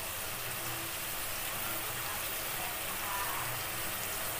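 Onion and garlic-chilli masala frying in oil in a steel kadhai, sizzling with a steady, even hiss.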